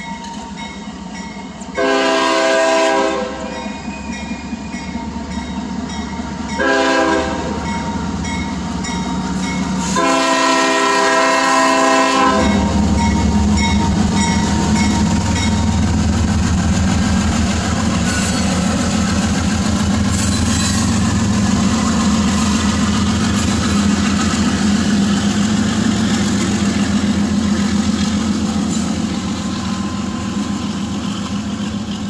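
CSX diesel freight locomotive's air horn sounding for a grade crossing: a long blast, a short one, then a longer one held as the train reaches the crossing, with the crossing bell ringing underneath. From about halfway through, the locomotive passes close with a loud, steady engine rumble, followed by the rolling clatter of covered hopper cars.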